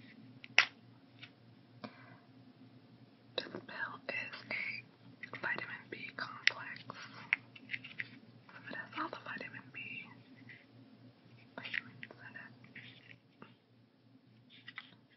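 Soft whispering, mixed with sharp clicks from the plastic snap lids of a weekly pill organizer. The loudest click comes about half a second in.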